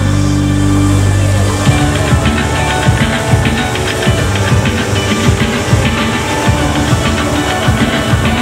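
Loud music: a held low chord that gives way, about two seconds in, to a busy stretch of rapid sharp percussive hits.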